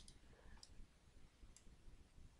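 Near silence with three faint clicks of a computer mouse.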